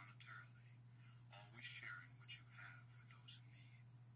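A faint, whispered voice speaking, over a steady low hum.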